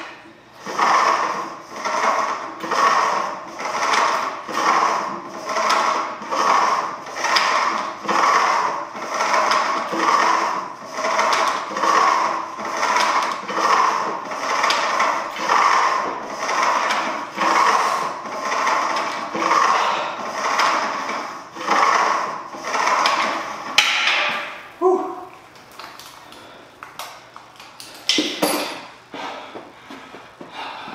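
A home-gym low-row cable and weight stack working through glute kickback reps: a rhythmic swell of cable and pulley noise about once a second. The reps stop about 24 seconds in, with a couple of knocks as the stack is set down.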